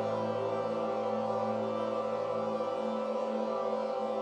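Ambient drone music: a chord of steady sustained tones held unchanged, the bed of a 40 Hz gamma binaural-beat track.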